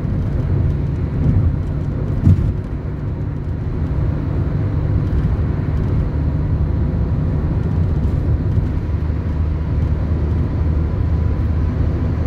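Steady low rumble of tyre and engine noise heard inside a car's cabin while cruising on a smooth expressway, with one brief bump about two seconds in.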